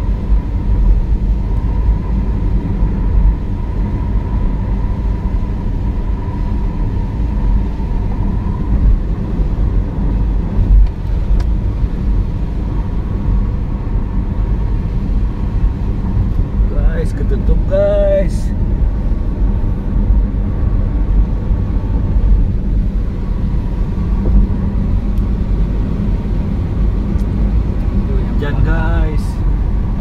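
Steady low road and tyre rumble of a car cruising on a wet highway, heard from inside the cabin. A voice is briefly heard a little past the middle and again near the end.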